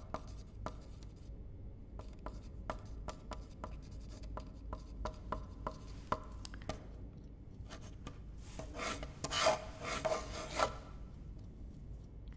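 A pencil writing on paper: short, irregular strokes and taps, then a burst of fast, hard scribbling about nine seconds in.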